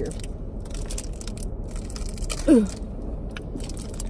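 Crinkling of a plastic candy wrapper being handled, mixed with crunching mouth sounds of eating, as short sharp clicks throughout; a short groaned "ugh" about two and a half seconds in.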